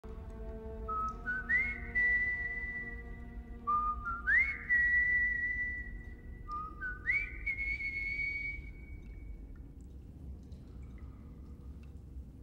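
Bowed musical saw playing a slow melody: three phrases, each sliding up from a lower note into a long held high note. It fades out after about nine seconds.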